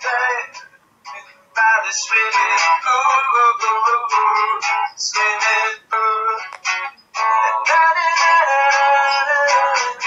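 A man singing to a strummed acoustic guitar, with a brief pause about a second in.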